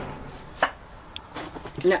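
A single sharp knock about half a second in, from belongings being handled and set down, then a short spoken "nuh-uh" near the end.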